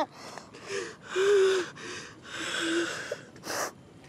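A person crying: several ragged, gasping sobbing breaths, some with a faint voice, then a sharp intake of breath near the end.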